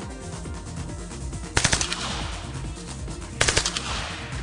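PP-19 Bizon submachine gun firing two short automatic bursts of a few shots each, about a second and a half in and again near the end; the first burst trails off in a long echo.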